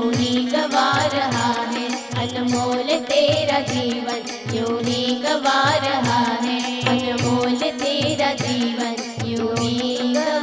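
Devotional bhajan music: keyboards and harmonium holding a steady drone and melody, with voices chanting over tabla. A regular low bass stroke from the tabla falls a little faster than once a second.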